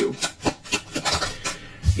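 Tarot cards being shuffled by hand: a quick run of short rubbing strokes, several a second, thinning out toward the end.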